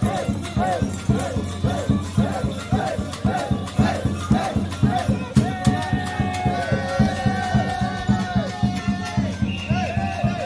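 Folk music for a New Year mummers' custom: a drum beats steadily about three times a second under a short, repeating melody, which gives way to longer held notes about halfway through, with rattling on top.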